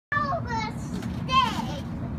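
Young children's voices: a couple of short high-pitched vocal sounds at the start, then a louder, higher cry about one and a half seconds in that slides down in pitch.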